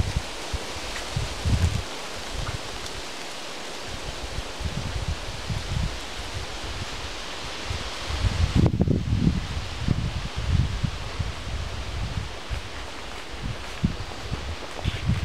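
Wind rustling the leaves of a forest canopy in a steady rush, with gusts buffeting the microphone in low rumbles that grow heavier in the second half.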